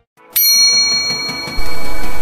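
A single bell-like chime sound effect struck about a third of a second in, its several high tones ringing on and slowly fading. Louder background music comes in near the end.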